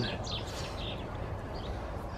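A few faint bird chirps over steady low background noise.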